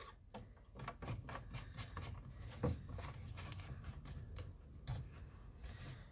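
Plastic trigger-spray head being screwed onto a plastic spray bottle: faint scraping from the threads and handling, with a few small clicks.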